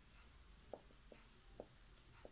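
Faint squeaks of a felt-tip marker on a whiteboard as letters are written by hand: three short strokes, the first about three-quarters of a second in.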